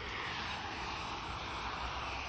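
A passing vehicle: a rushing noise that swells at the start and slowly fades, over a low rumble.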